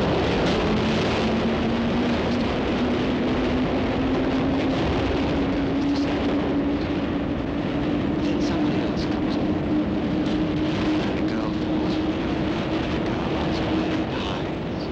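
Underground train running past the platform: a steady loud rumble with a whine that slowly rises in pitch, and faint clicks over it.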